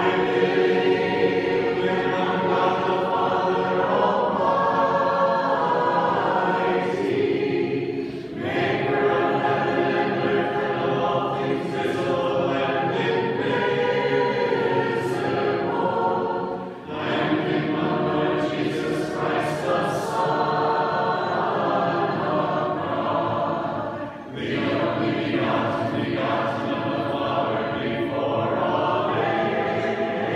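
Choir singing Orthodox liturgical chant a cappella. The sustained phrases are broken by short pauses about 8, 17 and 24 seconds in.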